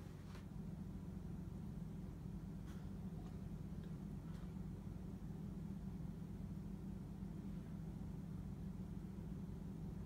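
Quiet room tone: a steady low hum, with a few faint clicks.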